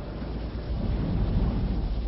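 Thunder rumbling over a steady hiss, swelling to its loudest about halfway through and easing off near the end.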